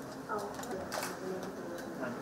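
Indistinct murmur of voices in a room, with a few faint clicks.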